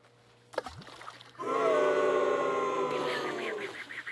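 A sharp click about half a second in, then a person's long, loud, drawn-out cry of excitement, held for over two seconds with its pitch slowly falling, as a skipped stone runs across the water.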